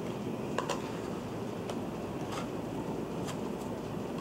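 Steady background room hiss with a few faint, light ticks and rustles of stiff paper model pieces being held and pressed together.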